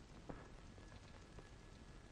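Near silence: faint soundtrack hiss with one soft click shortly after the start.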